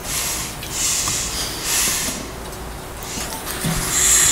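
A hand brushing over the wooden top of a 1930s Regal resonator guitar: soft hissing strokes, two longer ones in the first half and another near the end.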